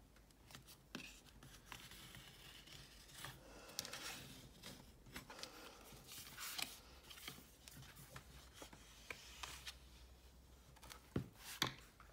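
Faint paper rustling and scraping: hands smoothing cardstock and a bone folder rubbed along the fold to crease it, with a few light clicks near the end.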